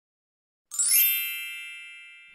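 A single bright chime sound effect, struck about two-thirds of a second in and ringing away slowly, as the equals sign and question mark appear in the on-screen sum.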